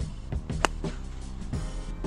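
Background music with a steady beat, and about half a second in a single sharp click of an iron striking a golf ball, a thin, skulled contact.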